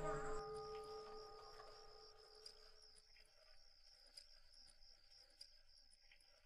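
Crickets chirping in a steady high trill through a quiet night, with soft music fading out over the first two seconds and a few faint ticks.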